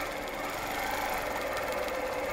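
Longarm quilting machine stitching steadily, a fast even run of needle strokes, as it is guided around a circle ruler.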